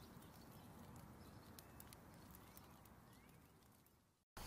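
Near silence: a faint hiss with scattered soft clicks, fading away toward the end.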